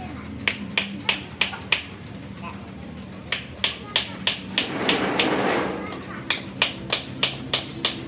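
Light, sharp hammer taps on a steel cylinder, about three a second, in three runs, with a brief rasping scrape about halfway.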